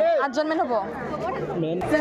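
Several people talking close by, their voices overlapping in conversation.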